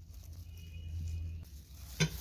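Quiet background with a low steady hum, and a faint high thin tone for about a second in the middle.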